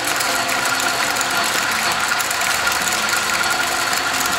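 1927 South Bend 9-inch metal lathe running just after switch-on, its 1/3 hp electric motor driving the belts and gear train with a steady whine over a dense, even rattle.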